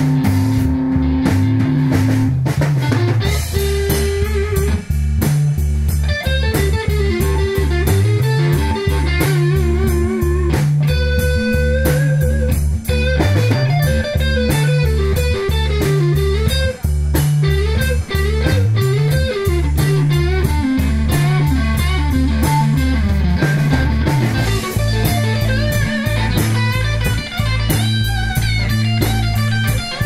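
Live instrumental rock jam: a Telecaster-style electric guitar plays a lead line over electric bass and a Pearl drum kit, with no vocals.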